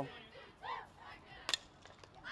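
Quiet ballpark ambience: a faint, distant voice calls briefly, then a single sharp click sounds about one and a half seconds in.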